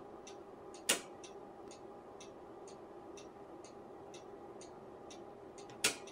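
Rotary TIME/DIV switch of a Tektronix 475 oscilloscope clicking into a new detent twice, about a second in and near the end. A faint steady ticking runs underneath, about two ticks a second.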